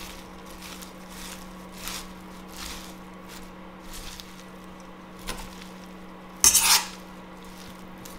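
Metal tongs tossing leafy salad in a stainless steel bowl: soft rustling, scraping strokes repeat every second or less, with one much louder clatter of metal on the bowl about six and a half seconds in. A steady low hum runs underneath.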